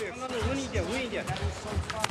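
Voices calling out with wavering pitch over background music with a low, steady beat.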